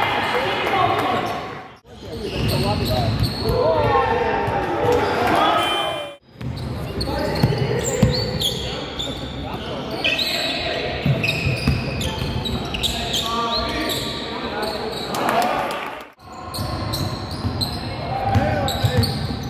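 Basketball game play: a ball bouncing on the court floor and players calling out, with the echo of a large sports hall. The sound cuts out briefly three times.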